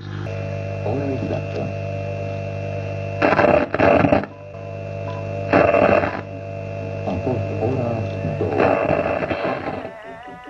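Logo-intro sound design: a steady droning tone with three loud roaring rushes, about three seconds in, around five and a half seconds, and near the end. Between them comes a voice-like sound whose pitch bends.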